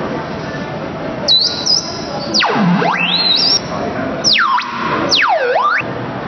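Electronic synthesized tones from an interactive sound installation: a run of swooping glides, high chirps dipping and rising, then long sweeps falling from high to low and climbing back up, theremin-like.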